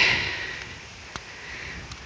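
Quiet outdoor ambience: light wind rumbling on the microphone, with a single faint click about a second in.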